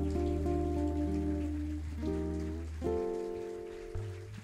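Live band of guitar, electric bass and hand percussion playing the closing instrumental bars of the song. A low bass note stops about three seconds in, and a final chord is held and fades toward the end.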